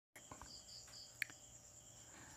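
Faint, steady, high-pitched chirring of insects, with one small click a little after one second.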